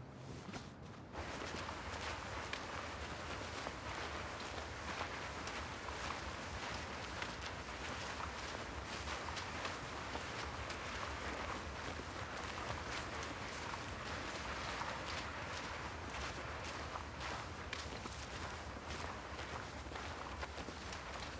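Footsteps of several people walking through long grass and undergrowth, a steady shuffling rustle that starts about a second in.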